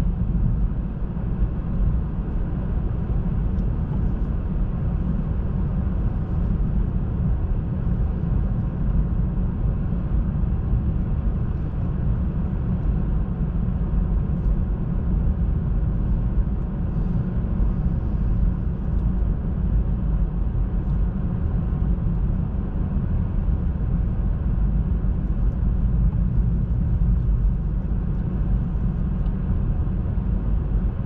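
Hyundai IONIQ driving along, heard from inside the cabin: a steady low rumble of tyres and road, unchanging throughout.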